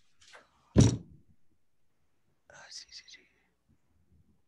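A short spoken "uh" about a second in, with a knock-like onset, then a brief faint breathy, whisper-like sound in the second half.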